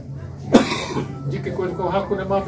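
A person's voice speaking, broken by one sharp cough about half a second in.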